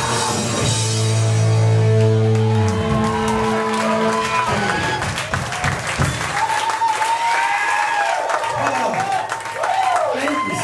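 A hardcore punk band's final chord held on guitar and bass, ringing steadily for about four seconds before it stops. The crowd then cheers and claps, with shouts and whoops.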